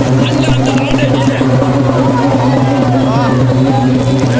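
People's voices calling out over a loud, steady low hum.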